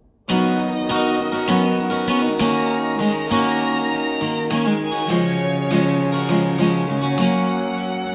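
Acoustic guitar strummed with a small string section of violin, cello and double bass, the music starting suddenly about a quarter second in: a folk song getting under way.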